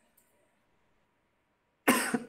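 Near silence, then near the end a man coughs once, sharply, into his hand.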